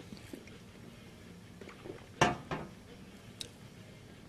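A man drinking from a glass bottle, with quiet swallowing and small clicks, then two short sharp throat sounds about two seconds in, the second one smaller.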